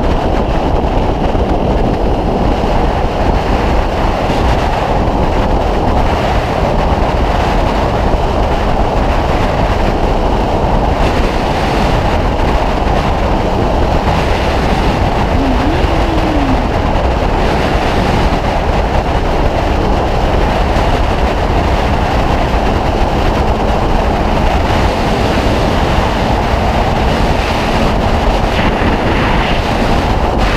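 A Honda Hornet 600 motorcycle cruising at motorway speed, its engine running at a steady pitch under loud wind and road noise. There are no gear changes or revs, just an even rush throughout.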